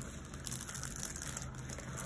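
Faint crinkling and rustling of the clear plastic film covering a diamond-painting canvas as it is handled, with a few small crackles.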